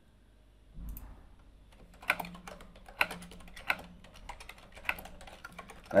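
Typing on a computer keyboard: a run of irregular keystrokes starting about two seconds in, after a low bump just under a second in.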